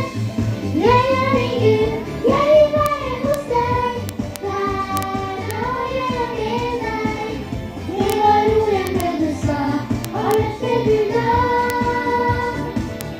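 A young girl singing a Norwegian song into a microphone, with a woman's voice singing along.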